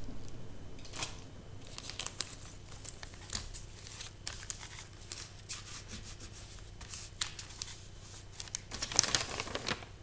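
Blue tape being pulled off the roll, torn and pressed down onto cardboard and paper, with paper rustling: a run of irregular crackles and clicks, busiest near the end.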